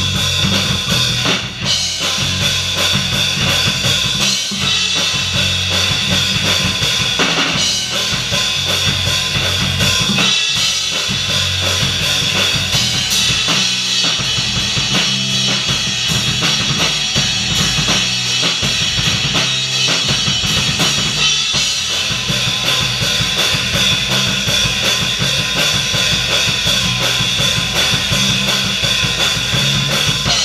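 Three-piece rock band playing live: electric guitar, electric bass guitar and drum kit, with steady kick and snare hits throughout.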